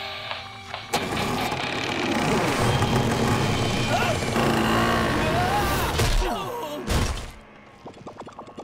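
Cartoon action soundtrack: dramatic music mixed with sound effects, with a sharp hit about a second in and another about seven seconds in.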